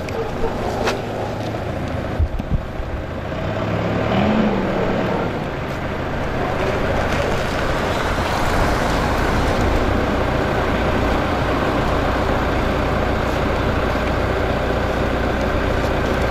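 Backhoe loader's diesel engine running steadily, a little louder in the second half.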